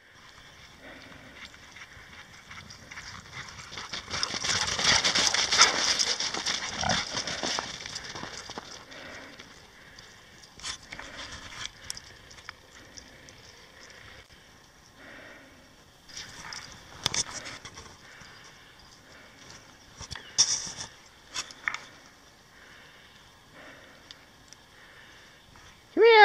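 Bouvier des Flandres dogs squealing and whining with excitement. The loudest stretch comes a few seconds in, followed by shorter scattered bursts.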